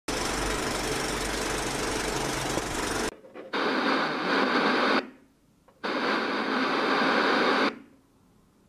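Static noise effect: a steady hiss with a low hum for about three seconds, then two bursts of TV-style static, each about a second and a half long, with a short gap between them.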